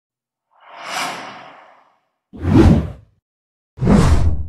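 Whoosh sound effects of an animated video intro: a soft swish swelling and fading about half a second in, then two shorter, louder whooshes with a deep boom underneath, about two and a half seconds in and near the end.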